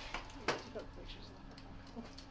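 A sharp plastic click about half a second in, with a fainter click just before it: a collecting cup being clipped onto the end of a zooplankton net.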